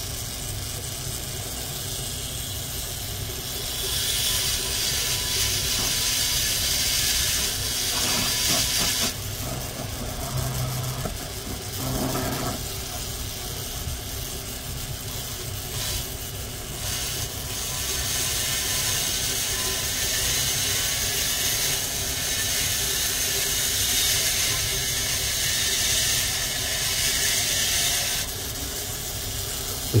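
Rotary carving handpiece running a diamond bit at a few thousand RPM, grinding into wet fire agate, over the steady hiss of two dust-collection vacuums. The grinding grows louder in two long stretches, the first starting about four seconds in, with short lulls as the bit lifts off.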